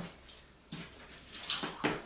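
Skipping rope slapping a rubber-matted gym floor, with single-leg hop landings, as skipping restarts after a reset. After a short quiet pause there are three separate light knocks, the sharpest about halfway through.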